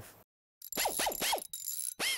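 Logo sound-effect sting: a run of quick chirps, each sliding down in pitch, starting a little under a second in, about four in quick succession, then more after a brief break.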